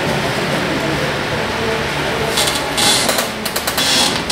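A steady mechanical hum, joined from about halfway by a run of crisp crackling rustles of paper sheets being handled and turned.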